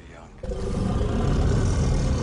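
Loud, low, dense film sound effect that starts about half a second in, after a quieter moment.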